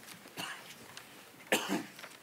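A person in the congregation coughing: a softer cough about half a second in, then a louder, sharper cough near the end, over the low background of a large quiet hall.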